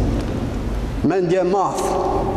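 A steady low rumble with a hiss over it fills the first second, then a man speaks a short word into a microphone.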